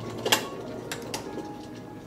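A copper kettle handled: one sharp metal clink about a third of a second in, then two lighter clicks about a second in.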